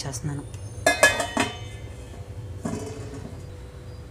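A steel plate set down as a lid on an aluminium pot, clattering and ringing about a second in, then a duller knock near three seconds as a stone weight goes on top, closing the pot so the cake can bake on the stove.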